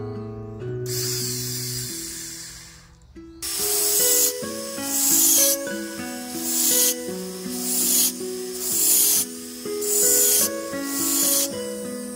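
Jeweller's micromotor handpiece with a small burr cutting into a silver ring band: one longer hissing run of about two seconds, then about seven short cutting strokes, each under a second, roughly one a second.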